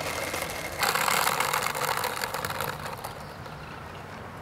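Skateboard wheels rolling over rough asphalt: a grainy rolling noise that starts suddenly about a second in and slowly fades.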